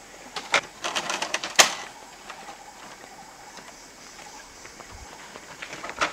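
A few sharp wooden knocks and rattles from a man working on a pole-built tree platform, bunched in the first two seconds, then only a faint, steady background.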